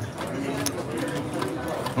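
Low background chatter of voices, with a single sharp click of poker chips being set down on the table about two-thirds of a second in.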